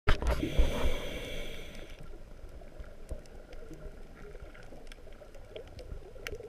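Underwater reef ambience through a camera's waterproof housing: a low, muffled water rumble with scattered sharp clicks. For about the first two seconds a louder hiss with steady tones lies over it, then cuts off.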